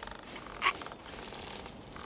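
Animated sheep's throaty, rattling grumble that fades out about a second in, broken by a short sharp breath.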